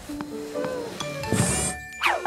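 Light cartoon background music of short melodic notes, with a brief swishing sound effect about one and a half seconds in.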